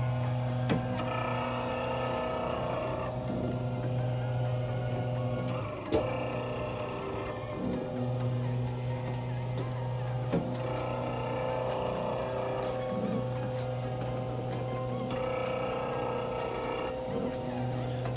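Sleeve valve cylinder display model running on its chain and sprocket drive: a steady mechanical hum with several held tones.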